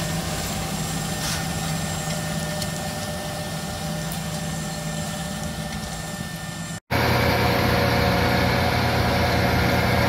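Large John Deere tractor's diesel engine running steadily while pulling a planter, fading slightly as it draws away. After a brief dropout about seven seconds in, the engine is heard close up and louder.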